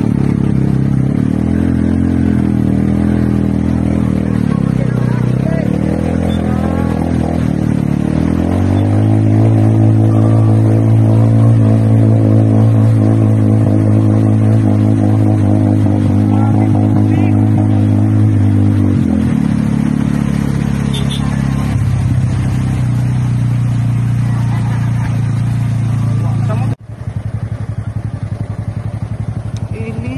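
Motor vehicle engine running over a constant wash of noise, its pitch climbing about eight seconds in, holding steady for about ten seconds and dropping back. Near the end the sound cuts off abruptly and a lower, pulsing engine sound takes over.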